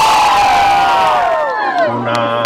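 Crowd cheering and shouting, with long high cries sliding down in pitch. The cheering dies away near the end.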